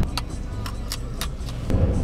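Car being driven, heard from inside the cabin: a steady low road and engine rumble, with a few sharp clicks scattered over it.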